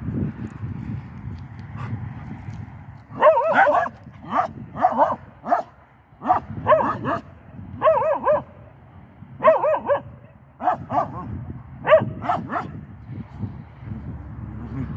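A dog barking in repeated groups of short, high barks, starting about three seconds in and going on for about nine seconds, over a low rustling.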